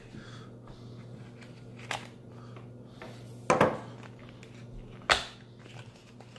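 A small cardboard box being cut and pried open with a thin metal tool: one faint click, then two sharp snapping clicks about a second and a half apart, over a low steady hum.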